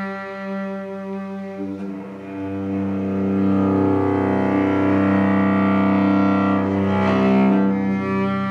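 Solo cello played with a bow: long sustained notes over a held low note, swelling louder about three seconds in, with a quick flurry of notes near the end.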